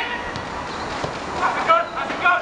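Footballers shouting to each other during goalmouth play, a raised voice calling out about one and a half seconds in over a steady outdoor hiss.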